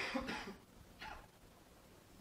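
A man coughing: a loud double cough at the start, then a single shorter, quieter cough about a second in.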